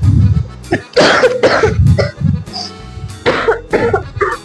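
A young woman coughing twice in quick succession about a second in, then twice again near the end, over background music with a low beat.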